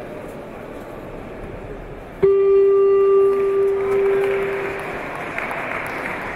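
An electronic scoreboard horn in a judo arena sounds once, a steady buzzing tone that starts suddenly a couple of seconds in and lasts about a second and a half before ringing out in the hall. This is the kind of signal that ends a contest's time. It sounds over a steady murmur of hall noise.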